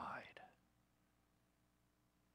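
A man's speaking voice trailing off about half a second in, then near silence: room tone with a faint steady hum.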